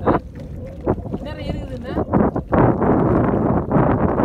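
Short bursts of voices over wind buffeting the microphone, with the wind rush filling the second half and growing loudest near the end.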